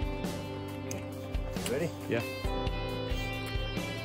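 Background music with guitar and a steady beat, with a brief voice about halfway through.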